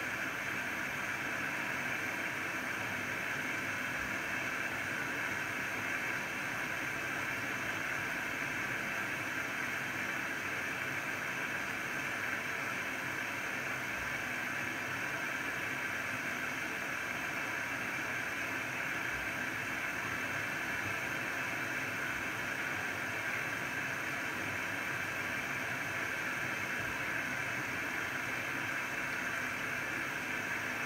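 Zanussi ZWF844B3PW washing machine filling, with water hissing steadily as it pours into the drum.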